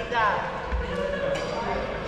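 Busy badminton hall ambience with echo: background chatter, a dull thud on the court floor and a sharp crack of a racket striking a shuttlecock, with a short falling squeak near the start.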